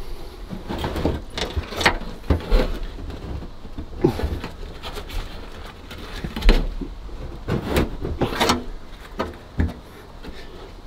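Irregular knocks, clicks and scrapes of a steel wheel-arch repair panel being pushed and shifted into place by gloved hands on a car body, with one sharper knock about six and a half seconds in.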